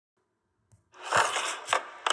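A faint click, then from about a second in a burst of hissy, crackly sound with two knocks as a hand presses a button on a Backyardigans toy guitar and the toy starts up.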